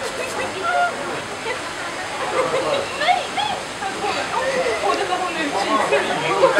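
Steady rush of water from an enclosure's artificial waterfall, with people's voices chattering faintly in the background.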